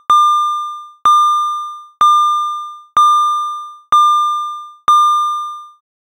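Rauland Telecenter intercom alert tone: a single bell-like ding repeated about once a second, six strikes in all, each dying away before the next.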